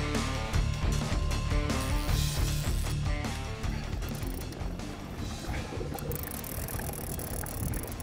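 Background music fading out about halfway through, leaving the noise of an open boat on the water with wind.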